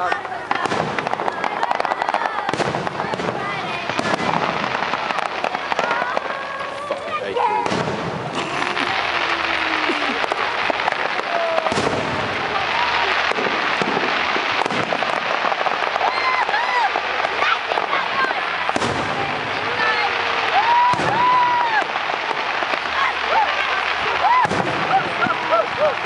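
Fireworks display: aerial shells bursting in repeated sharp bangs, over a thick, continuous wash of noise that builds from about eight seconds in.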